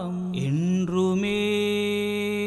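Devotional song: long held sung notes over a steady drone, the pitch sliding and shifting briefly about half a second in before settling on a new sustained note.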